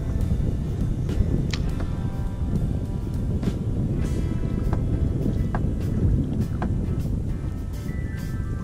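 Wind buffeting the camera microphone in a steady low rumble, with background music playing faintly underneath.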